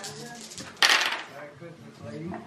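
Yatzy dice clattering onto a table in one short, loud rattle about a second in, over soft background chatter.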